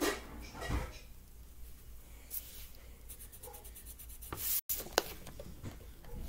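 Felt-tip marker rubbing and scratching across paper in short strokes, as a drawing is coloured in. The sound drops out completely for an instant about three-quarters through.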